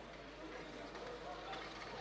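Faint outdoor background at a stadium: a steady low hiss with a low hum underneath and no distinct events.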